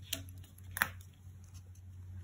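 Two brief paper taps and rustles as a planner sticker is set down with tweezers and pressed onto the page, the second one louder, a little under a second in.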